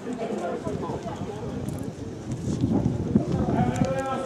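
Indistinct voices of people talking, with wind buffeting the microphone, which gets louder a little past halfway.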